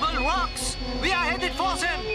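A high, squeaky cartoon voice making a quick run of rising-and-falling yelps over sustained background music chords.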